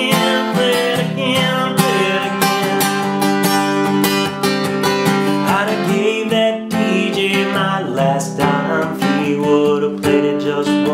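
Steel-string acoustic guitar, capoed at the fifth fret, strummed steadily through a chord progression, with a man's voice singing the song over it.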